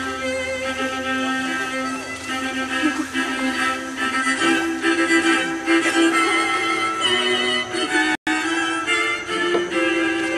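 String music led by a violin, playing sustained, wavering notes over lower held tones. The sound cuts out briefly about eight seconds in.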